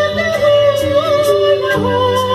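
A woman singing into a microphone over backing music with a steady beat, holding long notes that waver and slide from one pitch to the next.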